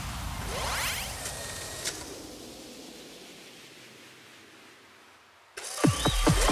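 Electronic whoosh transition effect: rising sweeps in the first second, then a hiss that slowly fades away. Loud electronic music with falling sweeps cuts back in just before the end.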